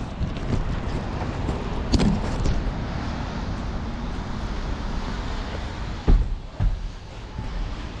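Handling noise on a drone's onboard camera held in a hand: a steady rushing noise with a few short knocks, the loudest about two seconds and six seconds in.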